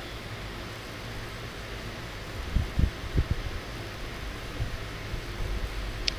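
A wooden spatula stirring shredded vegetables in a wok, with a few soft knocks against the pan about halfway through, over a steady hiss.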